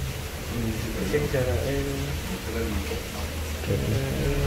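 Quiet conversational speech only, over a low steady room hum: no distinct non-speech sound.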